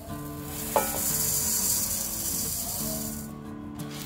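Raw idli rice poured from a bowl onto dry urad dal in a pot, the falling grains making a steady hiss for about three seconds. Soft background music plays under it.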